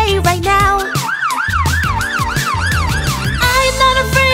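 Ambulance siren sound effect: a quick rising-and-falling wail, about four cycles a second, starting about a second in and stopping shortly before the end, over the song's backing music.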